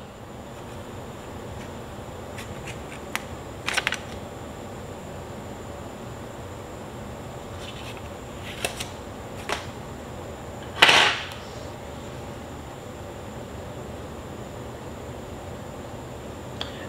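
Handling sounds of a ceramic mug being moved over a table: a few light clicks and knocks, and about eleven seconds in one louder, brief scraping rustle, over a steady low hum.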